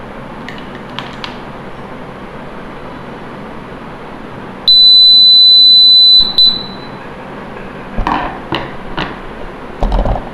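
An electronic buzzer sounds one steady, high-pitched beep lasting about a second and a half, a little before halfway, then a short blip. It goes off as the inductive proximity sensor lights up at a metal screwdriver held to its face. Several knocks and clicks of handling follow near the end.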